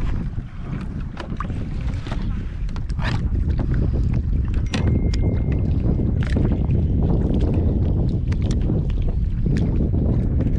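Wind buffeting the microphone as a heavy low rumble that grows louder about three seconds in, with many small clicks and knocks of water and gear against a plastic fishing kayak.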